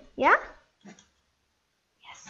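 A child's voice saying a single "yeah" with a rising pitch, then near silence.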